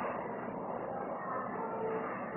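A duster rubbing across a chalkboard, wiping off chalk, with a steady rubbing noise.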